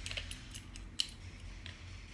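A few light clicks as parts are handled and slid into the grooves of a paintball marker's lower receiver, with one sharper click about a second in.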